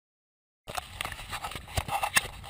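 Dead silence for the first half second, then close rustling and crackling with many sharp clicks.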